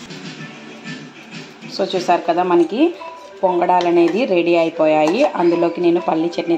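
Background song with a singing voice, coming in about two seconds in after a quieter start, with long held notes and sliding pitch.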